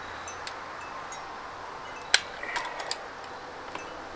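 A few light metallic clicks and taps from hands handling the folding-frame hinge of a Lectric XP e-bike. The sharpest click comes about two seconds in, followed by a quick cluster of smaller ones, over a steady low hiss.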